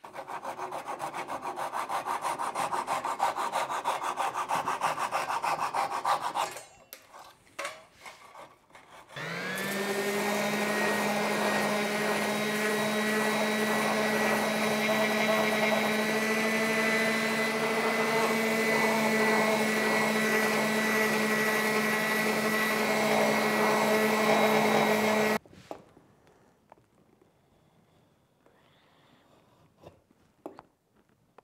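Hand saw strokes flush-cutting protruding wooden splines off a box's corners, followed by a few light knocks. About nine seconds in, an electric random orbital sander spins up and runs steadily on the wooden box for about sixteen seconds, then cuts off.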